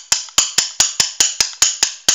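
A rapid, even series of sharp mechanical clicks, about five a second, like a ratchet or a switch being worked over and over.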